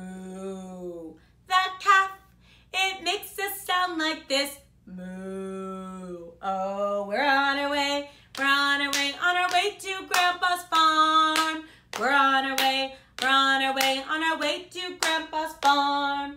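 A woman's voice imitating a calf: a long, low held "moo" that drops at its end, then a sung line and a second "moo". After that comes unaccompanied singing of a children's song chorus.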